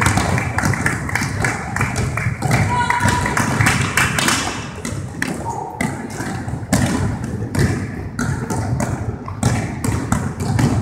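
Basketballs bouncing on a hardwood gym floor and off the rim and backboard during shooting drills: many irregular thuds and taps, with players' voices underneath.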